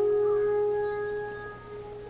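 Alphorn holding one long low note that dies away about a second and a half in.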